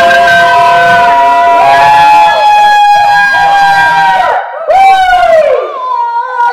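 Several people yelling and cheering together in long, drawn-out cries, loud and overlapping. The cries break off briefly about four seconds in, then start again.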